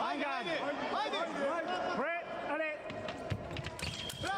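Voices calling out over the hall, then a quick run of sharp clicks and stamps from sabre footwork and blade contact about three seconds in, as an attack lands. A thin steady electronic tone from the scoring machine starts right at the end, signalling a touch.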